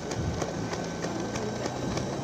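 Steady low engine hum from a vehicle running alongside the race, over a noisy outdoor bed with faint regular ticks about three a second.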